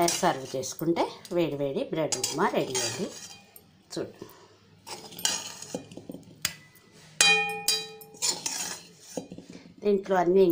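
Steel spoon clinking and scraping against a stainless steel plate while upma is served. About seven seconds in, a sharp clink sets the plate ringing for about a second.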